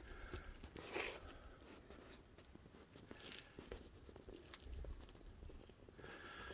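Quiet, faint footsteps of a hiker on a dirt and rock trail: a few soft, irregular scuffs over a low rumble.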